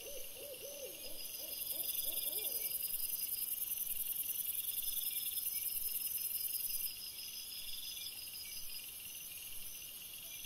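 Night insects chirping, crickets and bush-crickets, in even repeated pulses, with a louder high-pitched insect buzz that comes in about a second in and stops abruptly near seven seconds. Over the first three seconds a rapid run of short low hooting calls, about four a second, fades out.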